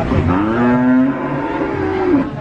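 A cow mooing: one long, low call that rises in pitch as it starts, holds steady, and falls away at the end.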